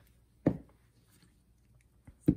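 A single sharp knock of a clear acrylic stamp block against a hard surface, about half a second in, in a stamping session.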